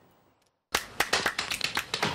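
Near silence for the first moment, then from about three-quarters of a second in a quick run of sharp percussive clicks, like snaps or taps, as the music of a TV advertisement starts.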